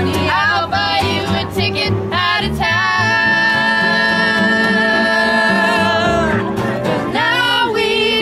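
Small acoustic street band playing live: a woman sings over upright bass and guitar, holding one long note through the middle before the melody moves on again.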